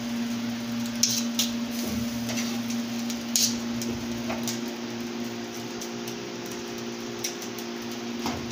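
A steady low hum in a kitchen, with a few light clicks of metal utensils against the griddle, about a second in and again around three and a half seconds.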